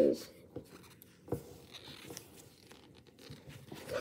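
Cardboard baseball cards being shuffled and flipped through by hand: faint rustling with a few soft, scattered ticks as the cards slide over one another.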